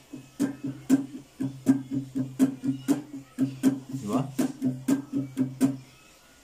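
Nylon-string classical guitar strummed in a steady rhythmic pattern, about four strokes a second, each stroke with a percussive attack over ringing chords. This is the strumming rhythm being demonstrated.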